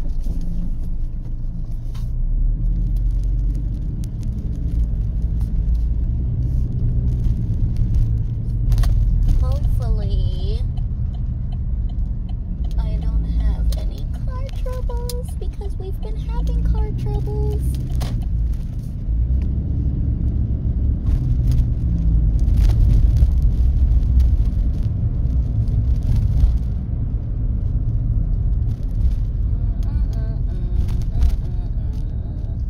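Car being driven, heard from inside the cabin: a steady low rumble of engine and road noise. A voice comes in briefly about ten seconds in and again for a few seconds soon after.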